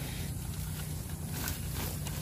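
Faint rustling and scraping as a wire mesh trap is hooked and dragged through dry bamboo litter and leaves with a long pole, with a few small clicks, over a steady low background hum.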